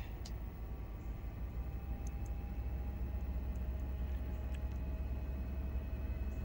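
MaxxFan roof vent fan in a pop-up camper running steadily at a middle speed setting: a constant low hum with a faint steady whine above it, and a few light ticks.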